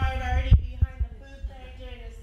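A woman speaking, her voice breaking off about half a second in, over a steady low hum, with a few dull low thumps shortly after.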